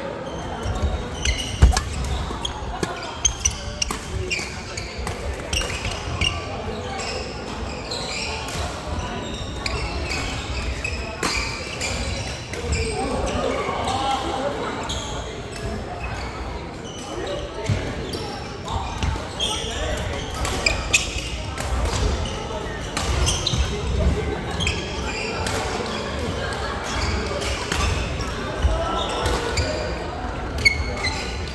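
Badminton play in a large reverberant sports hall: sharp racket-on-shuttlecock hits and thuds of footsteps on the wooden court, scattered through, the sharpest about a second and a half in, over a steady babble of voices from players around the hall.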